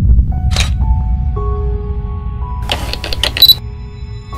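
Channel logo sting: a deep bass drone with synth tones coming in one after another, then a quick run of camera-shutter clicks with a bright ping about three seconds in.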